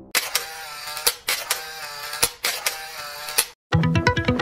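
Camera shutter sound effects for an intro: about half a dozen sharp clicks over a steady electronic tone. Near the end it cuts to a moment of silence and guitar music begins.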